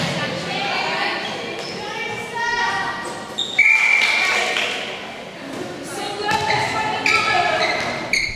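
Netball game in a large hall: players' voices shouting and calling, with occasional thuds of the ball. About three and a half seconds in comes a short, loud umpire's whistle blast on one steady pitch.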